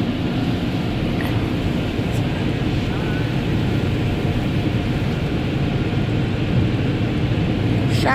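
Automatic tunnel car wash running, heard from inside the car's cabin: a steady, even rush of water spray and scrubbing equipment on the car.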